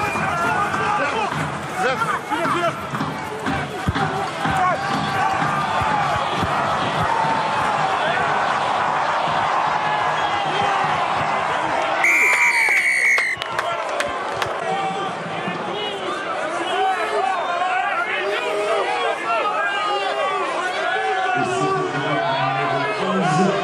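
Stadium crowd of many voices shouting and calling during open play. A referee's whistle sounds one blast of a little over a second, about halfway through, as the try is grounded.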